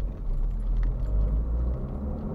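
Car driving, heard from inside the cabin: a low tyre-and-engine rumble that swells at the start and eases near the end.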